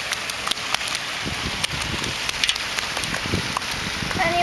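A landed patin catfish flopping in a landing net on the grass: a few soft thuds and rustles over a steady hiss.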